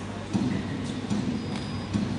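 Soundtrack of a sports video starting to play over loudspeakers, coming in suddenly about a third of a second in as an indistinct mix of sound.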